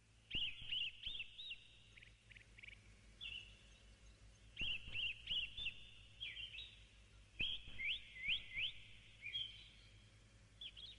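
A small bird singing short, quick chirping phrases about a second long, repeated every few seconds, over a faint steady low hum.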